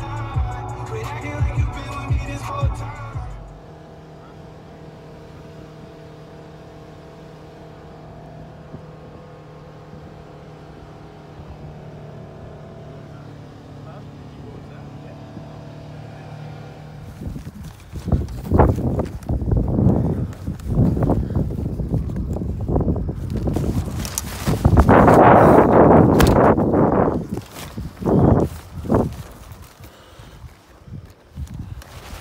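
Music for the first few seconds, then the steady drone of a vehicle's engine and road noise heard inside the cab. From a little past halfway, loud irregular rustling and knocking, loudest for a few seconds near the end.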